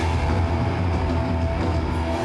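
Loud live hardcore punk music: heavily distorted guitars and bass holding a dense, steady low sound, with drums underneath.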